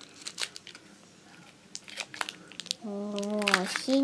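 Candy wrappers crinkling, with scattered light clicks, as wrapped sweets are handled. About three seconds in, a voice holds one long drawn-out sound.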